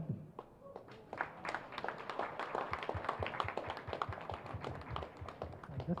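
Audience applause, beginning about a second in as a thick run of many hand claps.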